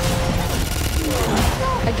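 Dense action-film sound mix: a rapid run of gunfire-like bangs and impacts over a held music tone, with short vocal sounds late on.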